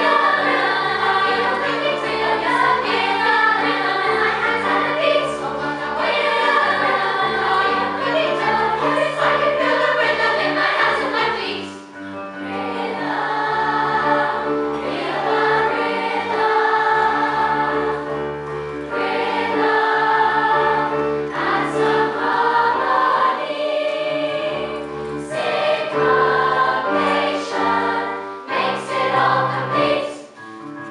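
Girls' choir singing in parts with keyboard accompaniment under held low notes, with a short break in the phrasing about twelve seconds in.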